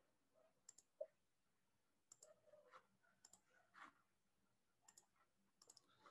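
Near silence with a few faint, scattered computer mouse clicks, some in quick pairs.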